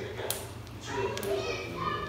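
Faint voices talking in a large room, with a sharp tap about a third of a second in.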